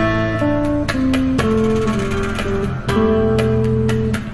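Stratocaster-style electric guitar playing a single-note melody over a backing track with a steady low drone and regular percussion. The melody steps down through several notes in the first second and a half, then holds longer, higher notes.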